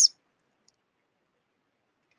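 Near silence after a voice trails off at the very start, with one faint click a little under a second in.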